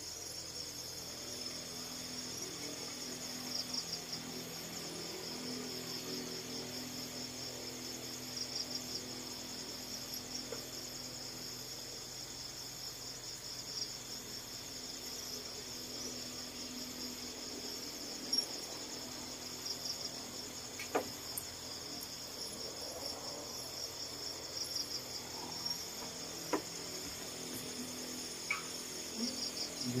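Crickets chirping in a steady, high, pulsing trill, with a few light knocks in the second half.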